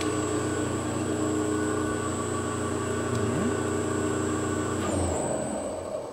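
Three-phase motors run by a variable frequency drive under load: a steady electrical hum with a thin, high, even whine from the drive. About five seconds in the hum changes and begins to die away.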